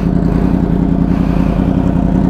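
A motorcycle engine idling steadily, an even low drone with a fast, regular pulse.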